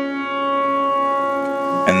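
Keyboard piano note, D-flat, held and ringing on, slowly fading.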